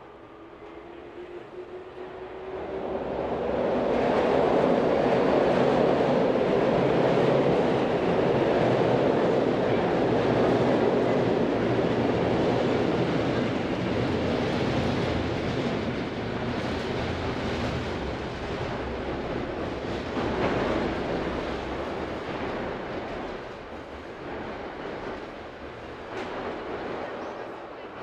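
Train passing over the steel-girder railway bridge overhead. It builds over the first few seconds with a faint rising whine, is loudest for several seconds, then slowly fades away.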